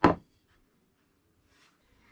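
A single sharp knock right at the start as a laminated chipboard panel is set down on its edge onto a plywood board.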